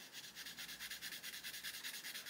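Derwent Lightfast coloured pencil rubbing faintly on paper in quick, short back-and-forth shading strokes, many a second.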